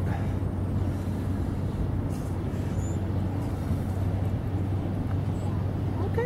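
Steady low urban background rumble, like distant city traffic, with a constant low hum underneath.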